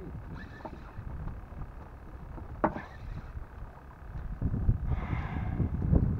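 Wind rumbling on the microphone and water sloshing around a small boat at sea, with a single sharp click about two and a half seconds in and a louder rush of noise near the end.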